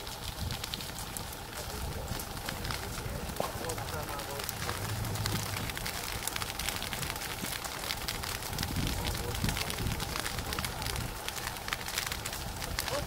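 A burning boat crackling and popping with many sharp snaps, over a steady low rumble.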